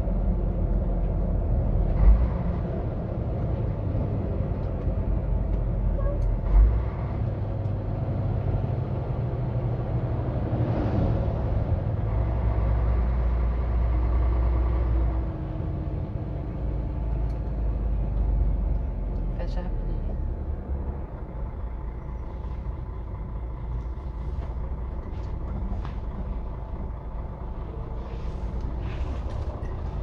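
Truck engine running and road noise heard inside the cab while driving, a steady low rumble with two sharp thumps about two and seven seconds in; it runs a little quieter from about halfway.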